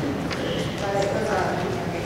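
Several people talking at once in a large hall, overlapping conversations with no single clear voice, with a few short clicks or knocks scattered among them.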